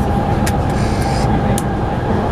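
Steady running noise inside a moving vehicle: a continuous low rumble with a faint steady whine, and two brief clicks.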